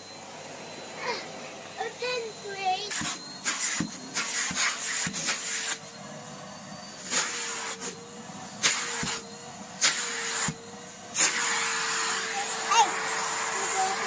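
Henry vacuum cleaner running: a steady hum with bursts of rushing suction noise as the hose nozzle is pushed over carpet, the longest near the end. A child's voice is heard now and then.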